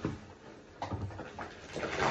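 Soap-soaked sponges squelching as they are squeezed in thick suds, in a few irregular wet squishes, the last one starting near the end.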